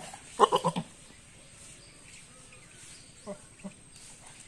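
A goat bleats once, a short wavering call about half a second in. Two brief, quieter calls follow near the end.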